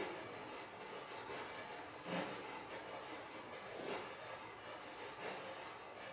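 Faint steady hiss of room tone, with a few faint, brief sounds about two and four seconds in.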